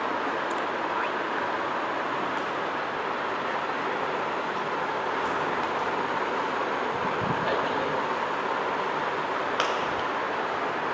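Steady rushing noise with no speech, with a brief soft thump about seven seconds in and a small click near the end.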